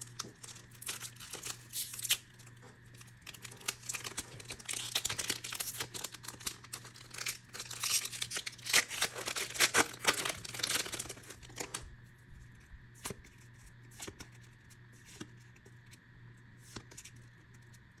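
Foil booster-pack wrapper of Pokémon cards being torn open by hand, crackling and crinkling. The crackle stops about two-thirds of the way through, leaving only a few faint clicks.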